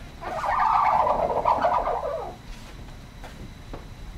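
Sliding chalkboard panels being pushed up in their frame: a rubbing, rumbling slide of about two seconds, followed by a couple of faint knocks.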